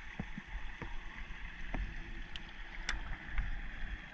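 Shallow stream water trickling and gurgling right at a camera held at the water's surface, with scattered small pops and drips over a low rumble.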